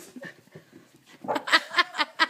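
Border collie whining: after a quiet start, a run of short, high-pitched whimpers begins about halfway through, ending in a longer held whine.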